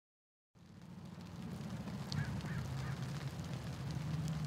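Outdoor ambience fading in after about half a second of silence: a low steady hum under faint background noise.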